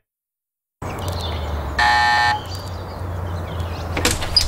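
A short silence, then a steady low background hum; about two seconds in, a doorbell buzzes once for about half a second.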